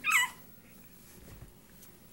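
A baby's brief high-pitched squeal right at the start, then only faint room tone.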